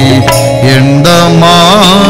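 A devotional song in an Indian style: a man's voice singing a slow, wavering melody over instrumental accompaniment with steady hand-drum beats.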